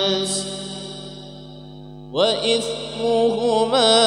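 Male voice reciting the Qur'an melodically in maqam Hijaz. A long held note fades out, and after a pause of about a second and a half the voice comes back in on a rising note with ornamented, wavering turns.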